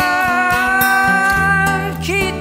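Music: acoustic guitar playing a passage of a song with held, ringing notes over a bass line, with no singing.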